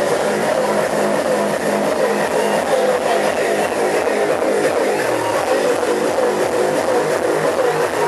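Hard techno DJ set played loud through a club sound system: a steady, driving kick-drum beat under a dense, distorted wall of sound.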